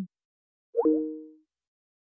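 Short electronic chime of a video-call app as the call closes: a quick upward sweep that settles into two steady low tones, fading out within about half a second, about a second in.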